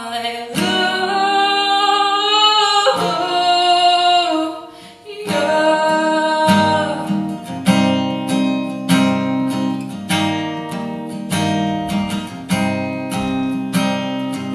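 A woman singing a slow song to her own strummed acoustic guitar. The first few seconds are long held sung notes; from about halfway the guitar strums fall into a steady rhythm under her voice.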